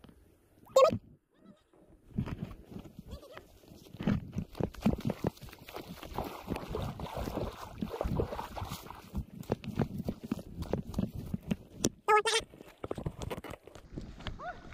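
Two short, high-pitched cries, one about a second in and a wavering one near the end. Between them comes a long stretch of irregular footsteps, rustling and splashing as someone hurries over grass and wet mud at the water's edge.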